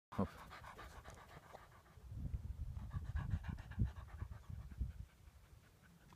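A dog panting close by: quick, steady breaths, about six a second.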